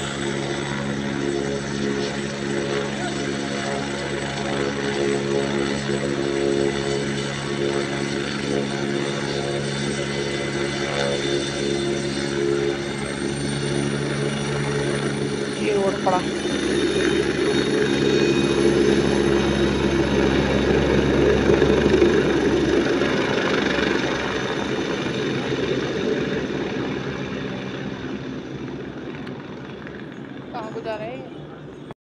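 Helicopter at a mountain helipad: a steady engine whine with rotor noise. After about sixteen seconds the sound changes and swells, as if the helicopter is lifting off, then fades near the end as it moves away.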